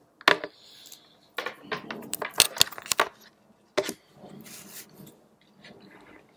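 Sharp clicks and light metallic clattering of a computer's charger cable and plug being handled and plugged in: one click, then a quick cluster of clicks, then a single click, followed by softer rustling.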